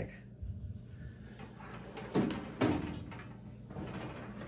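Steel drawers of a Seville Classics stainless-steel rolling cabinet: two knocks about two seconds in, then about a second of metal sliding on drawer runners, as one drawer is shut and another pulled open.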